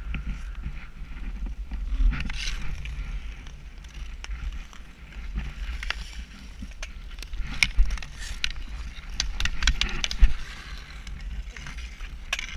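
Hockey skates scraping and carving on rough outdoor lake ice, with a run of sharp clicks of sticks and puck, the loudest about two-thirds of the way in and again near ten seconds. A steady low rumble lies under it all.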